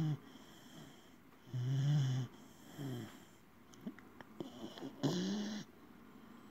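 Three-month-old puppy snoring in its sleep: low pitched snores, each under a second long, coming every one to two seconds, with a few small clicking snuffles before the last snore.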